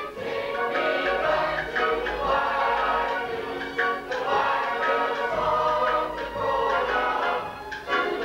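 Stage-musical cast singing together as a chorus, accompanied by a live pit orchestra.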